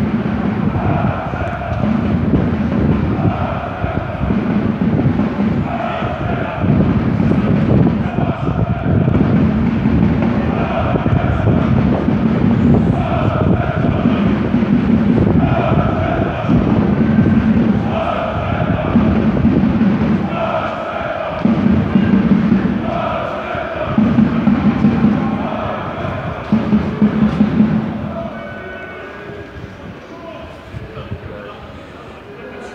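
A large crowd of football fans chanting in unison, one phrase repeated about every one and a half seconds, fading near the end.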